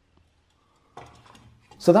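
A galvanised steel electrical back box is handled and fitted into a rough hole in a block wall. About a second in there is a sudden metallic clatter and scrape that fades over the next half second.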